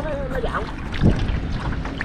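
Wooden oar stroking the river water beside a small boat, with light splashing and a low thump about a second in, over wind on the microphone.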